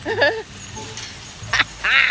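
A woman laughing: a short burst of laughter at the start, then a brief high-pitched laugh near the end.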